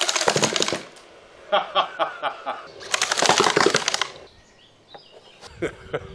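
A cordless-drill-powered repeating slingshot gun firing in two rapid bursts of clattering shots, each about a second long, the second about three seconds after the first.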